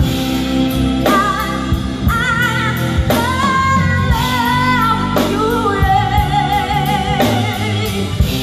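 A woman singing live with a band: long held notes with wide vibrato over bass guitar and a drum kit, with regular drum and cymbal hits.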